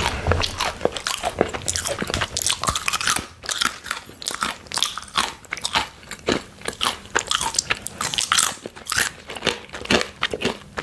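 Close-miked crunching and chewing of crisp plantain chips: a dense, irregular run of sharp crunches, several a second.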